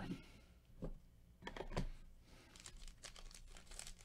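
Foil wrapper of a Panini Mosaic basketball card pack crinkling in gloved hands as it is picked up off the stack and handled: faint scattered crackles and rustles, growing denser near the end.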